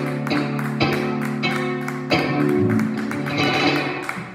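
Live instrumental music from grand piano and electric guitar playing together, with sustained chords and a strong new chord struck about halfway through.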